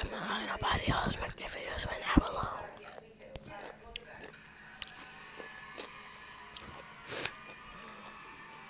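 A person chewing and biting food close to the microphone, with wet mouth noises. The sound is busiest over the first two seconds or so, then thins out to scattered short clicks, with one louder burst near the end.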